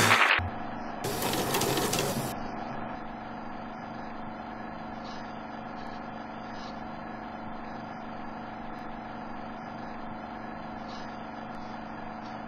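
A short burst of hiss about a second in, then a steady low hum and hiss with faint, scattered clicks.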